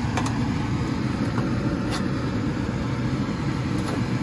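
Metal spatula scraping and clicking against a metal baking tray a few times while baked pork chops are turned. Under it runs a steady low machine hum.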